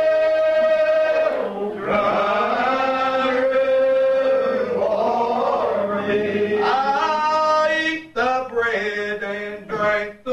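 Unaccompanied group singing of a lined-out Primitive Baptist hymn, in long, slow, drawn-out notes. The singing breaks briefly about eight seconds in, then goes on in shorter phrases.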